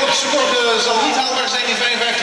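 A man's voice speaking over steady background noise.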